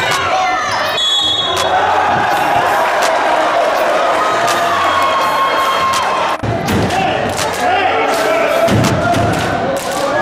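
Basketball bouncing and players' shoes hitting the hardwood floor of an echoing gym, with a steady hubbub of crowd voices and a few dull thuds in the second half.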